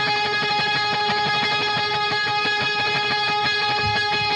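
Alt rock trio playing live, led by electric guitar picking over a chord held steadily throughout.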